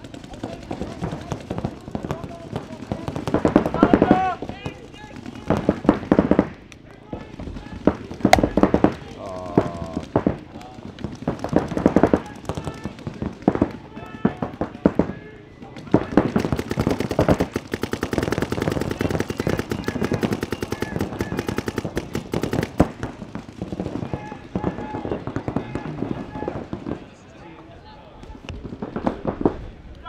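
Paintball markers firing in rapid strings of sharp pops, heaviest in a long unbroken burst of about seven seconds from halfway through, with shouted voices in between.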